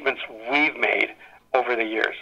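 Speech only: a man talking in a radio interview recording.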